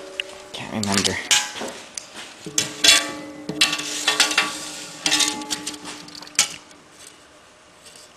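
Steel parts and tools clinking, knocking and scraping as they are handled on a workbench, a string of irregular clatters with a faint ringing tone through the middle.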